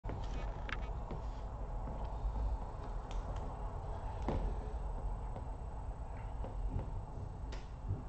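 Quiet room tone: a steady low hum with a few faint clicks scattered through it.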